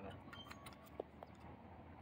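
Very quiet: a faint steady low hum with a few faint, short clicks in the first second or so.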